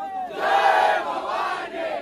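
A large crowd of men shouting together in one long cry that swells about half a second in and fades near the end.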